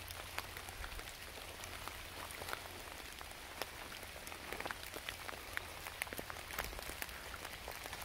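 Rain falling on wet leaf litter, many small drops ticking irregularly over a steady patter, with a low rumble underneath.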